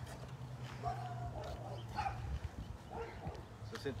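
A dog barking several short times.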